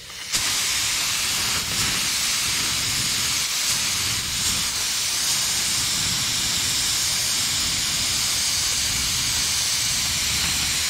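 A full-size gravity-feed paint spray gun hissing steadily as it sprays orange paint. The hiss starts with the trigger pull just after the start.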